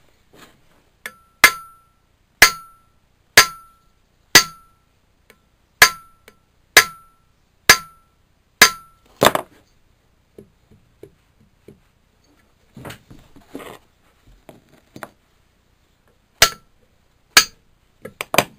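Hammer blows on the end of the flywheel nut of a Suffolk Iron Foundry stationary engine, about one a second, each with a short metallic ring, struck to knock the flywheel loose from its shaft. About nine blows in the first ten seconds, a pause with quiet handling sounds, then two more blows near the end.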